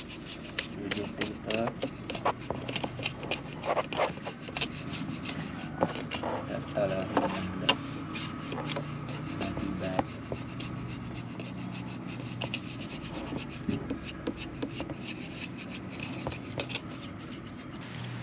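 A small brush scrubbing across the fins of a Honda CBR250RR radiator, a dry rubbing broken by many small ticks and scratches, to clear out insects and dirt lodged in it. A steady low hum runs underneath.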